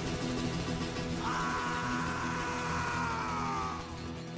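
Acoustic guitars ringing out a sustained chord at the close of a rock song. From about a second in, a man's voice holds one long high note that sags slightly in pitch and stops just before the end.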